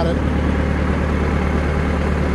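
Backhoe engine idling steadily, a constant low running sound with no change in speed.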